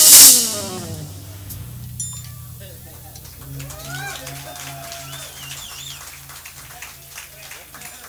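Live jazz band finishing a tune: a loud final crash and chord that dies away within about a second, then a low held keyboard or bass note wavering quietly under scattered audience voices.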